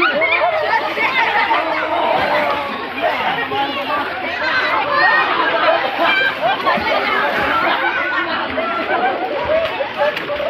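Several people's voices talking and calling out at once, overlapping chatter.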